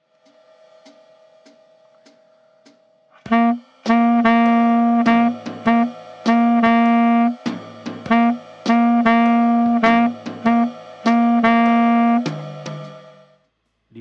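Tenor saxophone playing a syncopated rhythm on one repeated note, mixing short and held notes with some notes pushed half a beat early (anticipation). The playing starts about three seconds in, after soft, evenly spaced ticks, and stops near the end.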